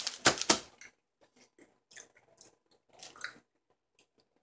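A person chewing a bite of an M&M's candy bar: a few loud, sharp crunches in the first half second, then quieter, scattered chewing sounds.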